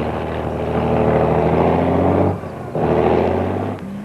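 Steady drone of heavy engines, one pitch held throughout, that drops away briefly about two and a half seconds in and then comes back.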